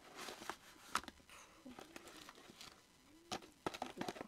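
Plastic and card packaging crinkling and rustling as items are handled and unpacked, with scattered light clicks and taps.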